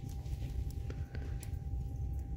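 Small clicks and light rustling of a shrink-wrapped cardboard two-pack of bar soap being turned over in the hand, over a steady low background rumble with a faint steady high tone.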